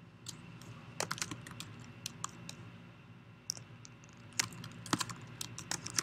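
Typing on a computer keyboard: quick, irregular keystrokes in two short runs with a pause in the middle.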